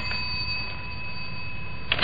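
A doorbell sound effect in an old radio drama: its faint steady ringing tone hangs on over the recording's hiss and hum, and a couple of sharp clicks come near the end.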